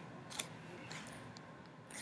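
Faint room hiss with a single short click about half a second in.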